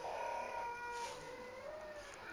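A baby's long, drawn-out vocal sound, held at a high pitch and wavering slightly for nearly two seconds.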